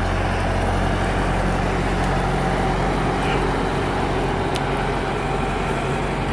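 A farm tractor's diesel engine running steadily, with one sharp click about four and a half seconds in.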